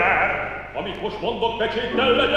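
A male opera singer singing in Hungarian with a wide vibrato, with piano accompaniment. The sung line breaks off briefly under a second in and then resumes.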